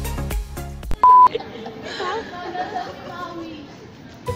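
Background music with a beat that cuts off about a second in, followed by a short, loud, steady electronic beep, then several people's voices chattering.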